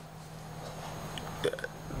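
Faint room tone with a steady low hum, broken by one brief vocal sound about one and a half seconds in.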